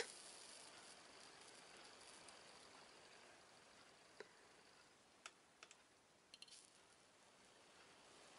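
Near silence, broken by a few faint, short clicks about halfway through.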